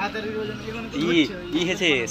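Speech only: people's voices talking, words that the recogniser did not write down.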